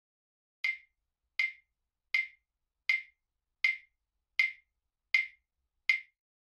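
Claves struck in a steady beat: eight sharp, bright wooden clicks about three-quarters of a second apart, each dying away quickly. This is the demo example played in a control room fitted with diffusers, absorbers and corner bass traps, and recorded with a dummy-head microphone.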